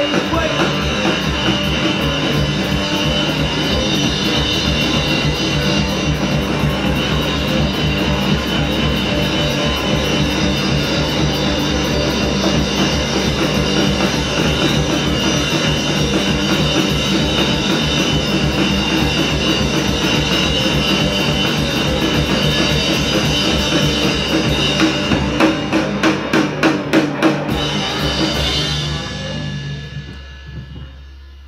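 Live rock band playing loud, drum kit and guitars together with no singing. Near the end the drums hit a run of hard, separate strokes, about three a second, and then the band's sound dies away, as at the close of a song.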